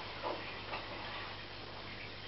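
Aquarium equipment running: a steady low hum under an even hiss of moving water, with two short plops about a quarter second and three-quarters of a second in.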